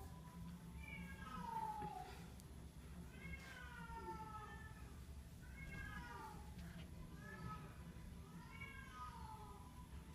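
A long-haired cat meowing repeatedly: about five meows spaced a second or two apart, each sliding down in pitch. The one about a second in is the loudest.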